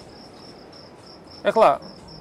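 Crickets chirping steadily: an even, high-pitched pulse of about four chirps a second.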